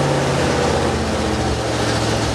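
1977 Chevy pickup's small-block V8 running steadily just after a cold start, which it takes without a choke; its pitch sags slightly about a second and a half in.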